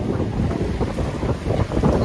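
Wind buffeting a phone's microphone: a loud, uneven low rumble.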